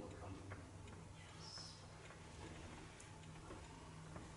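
Near silence: quiet room tone with a steady low hum and a few faint, irregular ticks.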